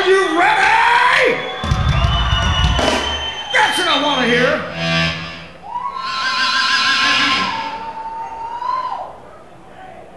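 A live rock band's singer holding long wordless notes into the microphone that bend and slide in pitch, over bursts of band sound with heavy bass early on; one long held note in the second half slides down and fades near the end.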